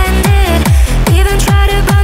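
Hands Up dance track playing loud: a kick drum on every beat, about two a second, under a bass line and a high synth lead that slides in pitch.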